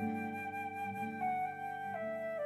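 Slow, calm flute melody of long held notes, stepping down in pitch about a second in and again near the end, over a soft sustained lower accompaniment.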